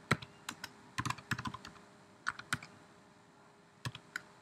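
Computer keyboard being typed on: an irregular run of about ten keystrokes over the first two and a half seconds, a pause, then a single keystroke near the end.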